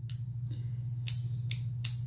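A few short sharp clicks over a steady low hum.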